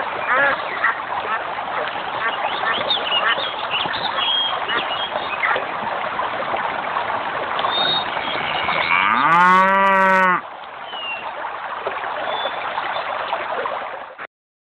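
A cow mooing once, one long call that rises and then holds for about two seconds before cutting off, roughly nine seconds in. Underneath, a steady outdoor ambience with short chirping bird calls.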